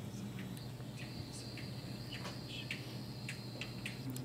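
Quiet pause in a hall with an amplified band: a steady low electrical hum from the sound system and a faint, steady high-pitched whine that starts about a second in. Scattered small clicks and shuffles are heard over them.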